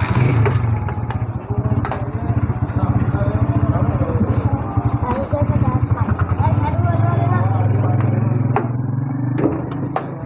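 An engine running close by with a steady low pulse, dropping away near the end, with voices talking over it.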